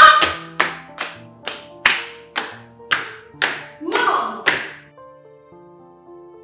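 Hands clapping in a steady rhythm, about a dozen sharp claps at roughly two a second, with a short vocal cry near the end. The claps stop about five seconds in. Soft background music plays underneath throughout.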